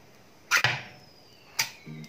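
Ring-pull lid of a metal food can being opened by hand: a sharp snap as the tab breaks the seal about half a second in, a faint metallic squeal falling slowly in pitch as the lid is peeled back, and a second snap as it comes free.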